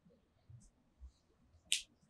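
Mostly quiet room, with one short, sharp tap near the end as a paper letter card is set down on a tabletop.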